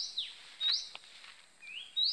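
A bird calling repeatedly: three short, high, sharp notes that each sweep up and fall away, less than a second apart.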